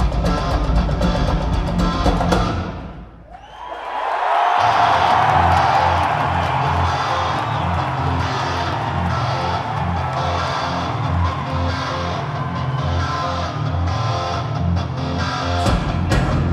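A heavy rock band plays live, with distorted guitar, bass and drums. About three seconds in, the sound sweeps down and almost drops out for about a second. It then swells back up, and the band carries on over pulsing bass notes.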